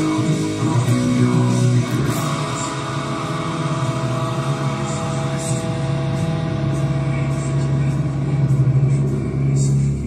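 Electric guitar, a Fender Stratocaster, played along with a full rock band recording with bass and vocals.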